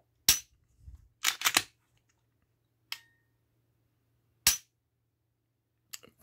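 Dry-fire clicks from an unloaded Polymer 80 PFC9 striker-fired pistol as its trigger is pulled and reset: a single sharp click, a quick group of three about a second in, a faint tick, then single clicks about four and a half seconds in and just before the end.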